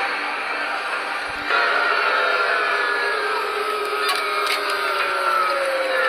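Soundtrack of online video clips playing through a computer's speakers. There is an abrupt cut about a second and a half in, then several sustained tones that slowly fall in pitch.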